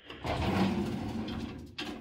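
Top drawer of a metal filing cabinet pulled open, sliding out on its runners with a rough, continuous rolling sound for about a second and a half, then a short click near the end.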